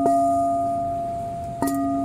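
Singing bowl struck twice with a striker, once at the start and again about one and a half seconds in, each strike ringing on in a steady, slowly fading tone of several pitches.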